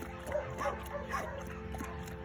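A dog making short whimpering squeaks, about two a second, while it eats.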